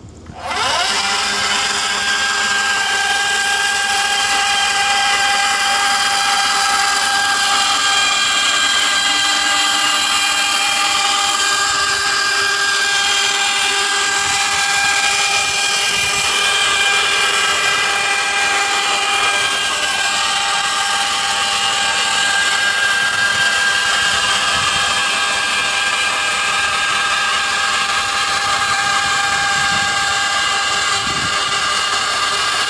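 Electric motor of a truck-mounted rig starting up and running steadily, driving an uncovered roller chain and sprockets; a steady, loud whine with several pitches that starts about half a second in.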